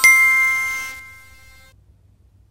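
Bell-like chime sound effect, much louder than the voice around it. It is struck at the start and rings in several clear tones that fade, then stops abruptly near the end. It is the second note of a two-note ding.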